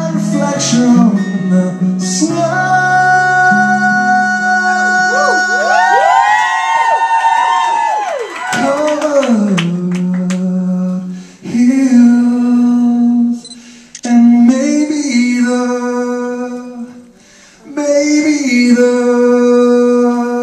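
Male voice singing long held, wordless notes in a live acoustic performance, with a stretch of wavering vibrato in the middle and phrases broken by short breaths. Acoustic guitar accompanies at first and then falls away, leaving the voice nearly alone.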